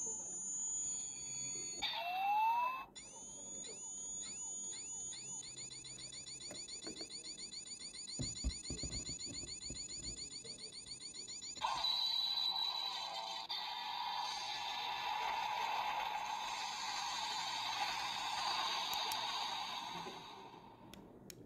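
Electronic sound effects played through the small speaker of a CSM Faiz Driver ver. 2.0 collector's toy belt. It gives a few falling chirps and a short rising sweep, then a fast, steadily repeating electronic trill for about eight seconds. About twelve seconds in, a louder hissing, crackling effect takes over and runs until the sounds stop.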